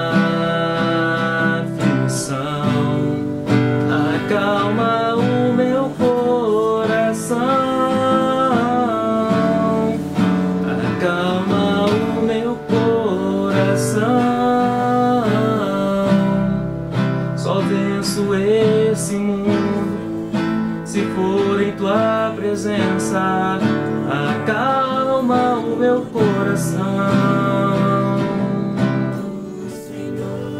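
Nylon-string classical guitar strummed in a steady rhythm, moving through the song's chord changes.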